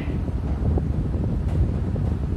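Steady low rumble of moving air buffeting the microphone, with a couple of faint ticks of chalk writing on a blackboard.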